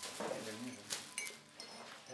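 Crinkly rustling of a plastic bread bag as a loaf is handled and set down on a wooden table, in several short scratchy bursts, with a faint voice near the start.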